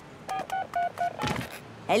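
Cartoon mobile phone ringing: four short electronic beeps, about four a second, followed by a brief gliding sound.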